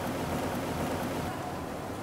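Steady rushing and churning of aerated sewage water in a treatment-plant tank.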